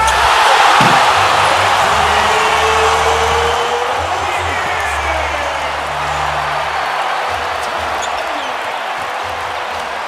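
Basketball arena crowd erupting in a roar at a dunk, the cheer jumping up at once and then slowly fading over several seconds, with music underneath.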